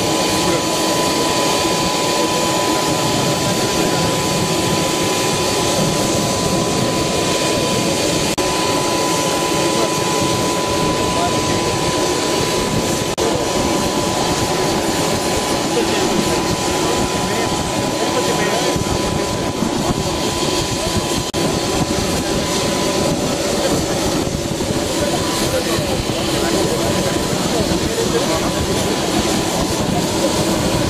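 Aircraft turbine engine running on the apron: a steady dense noise with a thin, high, steady whine running through it.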